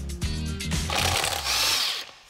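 Background music for about a second, then a cordless impact wrench running on a car's wheel bolt: a dense, rattling buzz until the end.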